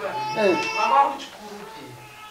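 A child crying and whimpering in high, wavering wails, loudest in the first second and fading after.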